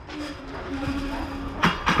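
Metal fence gate being closed: a steady, drawn-out squeak for about a second and a half, then two sharp metal clanks near the end.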